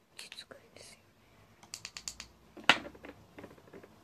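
Close handling noise at the microphone: brief rustles, then a quick run of light clicks and taps with one sharper knock a little past the middle.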